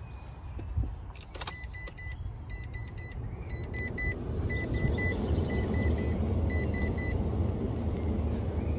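Mitsubishi L200 pickup's dashboard warning chime sounding in quick sets of three beeps, about one set a second, after a click. The cab door is open and the key has been turned in the ignition. A low rumble grows louder from about halfway.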